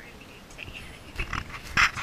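A small black puppy giving a few short, high-pitched yips, the loudest near the end.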